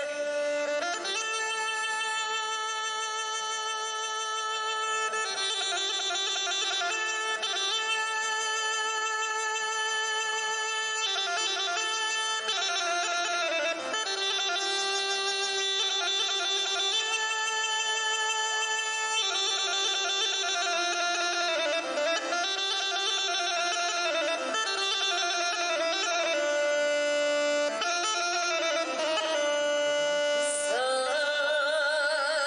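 Rhodope kaba gaida, the large Bulgarian goatskin bagpipe, playing a slow instrumental melody of long held notes that change every few seconds.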